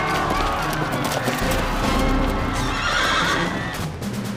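Horses galloping, hooves clattering, with a horse whinnying about three seconds in, over dramatic background music.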